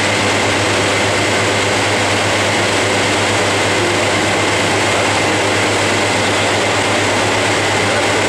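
Centrifugal water pumps driven by electric motors, running steadily in a pumping-station machine hall: a loud, even drone with a low hum and a thin high whine held throughout.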